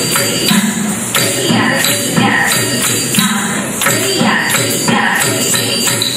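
Bharatanatyam adavu accompaniment: a mridangam played in an even rhythm of about two strokes a second, with a woman chanting the rhythmic dance syllables. The dancers' feet stamp in time and their ankle bells jingle.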